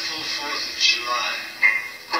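A man's voice at the microphone, breathy and unclear, in a break between guitar phrases, heard through a television's speaker.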